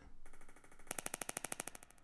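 A recorded finger-snap sample played back looped on the GarageBand for iPad sampler. It repeats as a fast, even train of faint clicks, about a dozen a second, through the second half.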